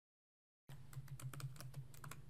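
Typing on a computer keyboard: a quick run of key clicks starting under a second in, with a low hum behind them.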